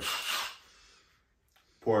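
Cordless drill given a brief trigger pull: a short whirr lasting about half a second at the start.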